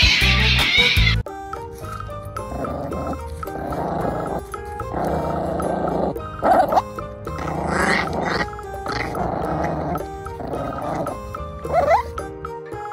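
Background music, with a puppy growling in stretches over it and two short rising whines, one midway and one near the end.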